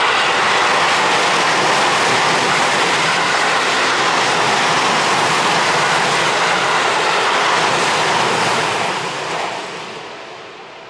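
Seibu 30000 series electric multiple-unit train passing close by at speed, with loud steady wheel-on-rail running noise. The noise fades away in the last second as the rear car goes by.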